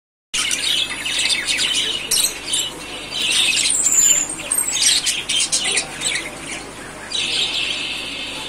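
A cageful of budgerigars chattering: many high chirps and warbles overlapping without a break.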